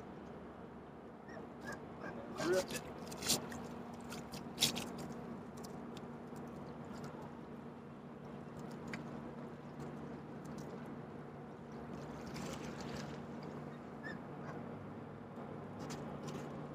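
Quiet shoreline ambience with a steady low hum as a castable crab trap's line is hauled in by hand. A few short clicks and splashes sound in the first five seconds and again about twelve seconds in.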